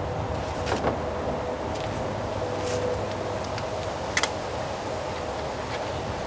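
A few light clicks and taps from the headlight retaining clips and housing being handled and swapped, the sharpest a little past the middle, over a steady low background hum.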